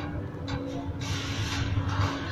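Steady hum with a burst of hissing through the second second, over a few faint clicks from a screwdriver prying at an engine's ignition coil connector.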